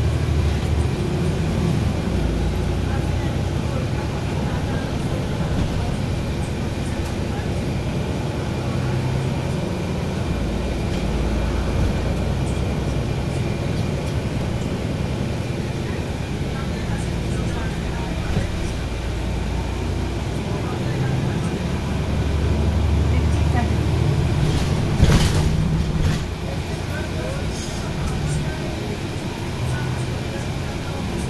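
Cabin sound of a NABI 416.15 transit bus under way: a low engine drone that swells and eases as it pulls away and slows, with a faint steady whine above it. A single brief, loud knock comes about five seconds before the end.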